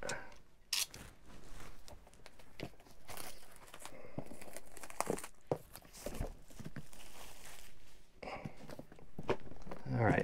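Clear plastic shrink-wrap being torn and peeled off a vinyl record box set, crinkling in irregular bursts with sharp little clicks as the box is handled.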